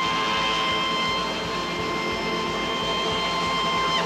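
A traditional jazz band's final held note ending the tune: one steady high tone with its overtones sustained over a wash of sound, cutting off suddenly at the end.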